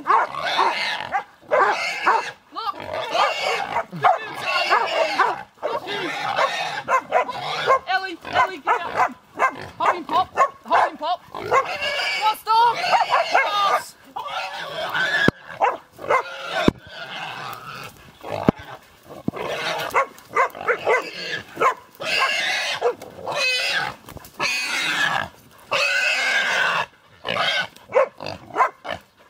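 Feral pig squealing loudly and over and over as hunting dogs hold it, in repeated cries with short breaks between them.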